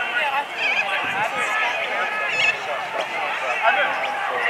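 Several voices shouting and calling over one another, with no words clear.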